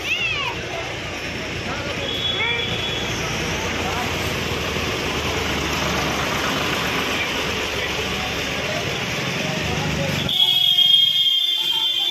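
Busy market street: people's voices over passing traffic. Near the end a high, steady electronic tone sounds for about two seconds.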